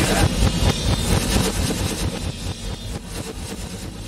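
A dense, noisy passage of a 1960s rock album recording that fades steadily in level.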